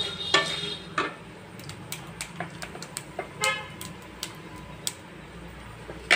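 Wooden spatula stirring and scraping whole spices (dried red chillies, seeds and peppercorns) being dry-roasted in a nonstick kadai, with scattered clicks and knocks against the pan, the loudest about half a second in. Short pitched toots, like a horn, sound twice in the background.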